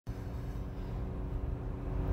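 Cabin noise of a Jeep Gladiator at highway speed while towing a heavy trailer: a steady low rumble of engine and road, with a faint steady hum from its 3.6-litre V6 held high, at about 3,600 rpm.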